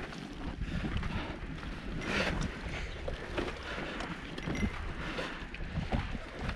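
Wind buffeting the camera microphone in a low, uneven rumble, with scattered clicks and crunches from the bicycle moving over a rough, sandy dirt road.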